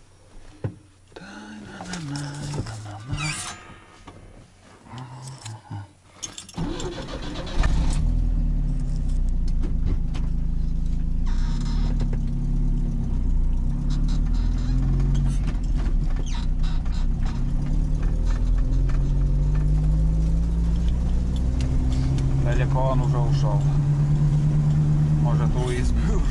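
UAZ engine started about seven seconds in, then running as the vehicle drives off along a dirt track, its pitch rising and falling with throttle and gear changes, heard from inside the cab. Before it starts there are only quiet clicks and handling sounds.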